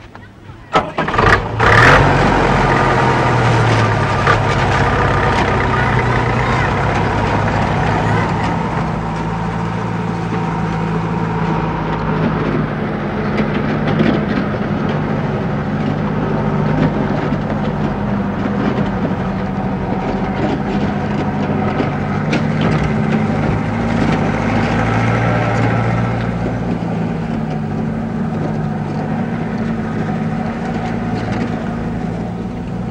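A small truck's engine starts with a sudden burst about a second in, then runs steadily as the truck pulls away.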